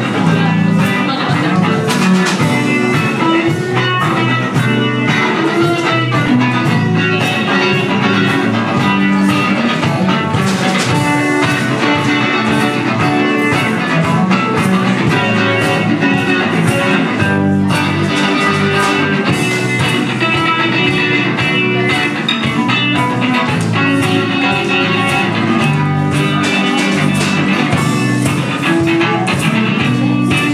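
Live band playing, led by electric guitar and electric bass, at a steady level.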